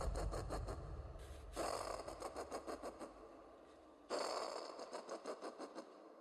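A rattling sound effect that starts suddenly twice, about a second and a half in and again about four seconds in, each time pulsing about five times a second and dying away, over a low rumble that fades out.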